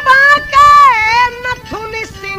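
Folk stage singing: a high-pitched voice holds long notes that slide and waver up and down, then breaks off into shorter phrases near the end.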